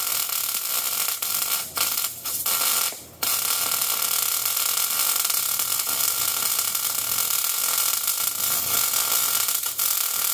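Wire-feed welder arc crackling steadily as a steel plate is welded onto the underside of a Ford 9-inch axle housing. The arc breaks off briefly three times in the first few seconds and restarts.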